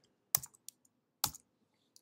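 Computer keyboard keystrokes: two sharp key clicks about a second apart with a fainter one between, a shortcut that fills the selection in Photoshop.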